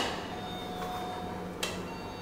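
Hotel room doorbell being pressed: a steady electronic tone sounds for about a second, then the button clicks.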